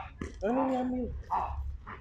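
A young Dobermann giving one drawn-out whine of steady pitch, lasting under a second, while held by the handler.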